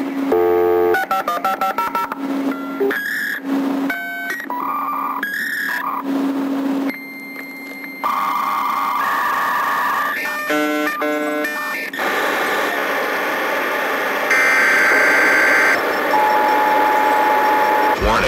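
Dial-up modem connection sound used as a sample in a techno track's breakdown: a quick run of dialling-style tones, a steady high answer tone, then screeching, hissing handshake noise with chirping tones.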